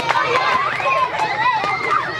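A group of young girls' voices calling and shouting over one another as they play a running game.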